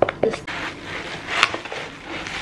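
Cardboard box being opened with a few sharp clicks, then plastic packaging rustling and crinkling as it is handled, with a sharp crackle about one and a half seconds in.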